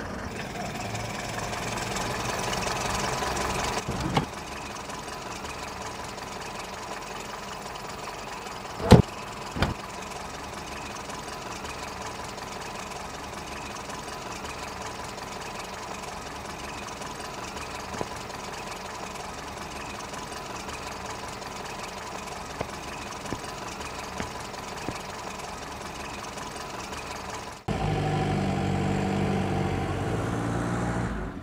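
The engine of a vintage Mercedes-Benz sedan idling steadily, with a sharp knock about nine seconds in. A louder sound cuts in suddenly near the end.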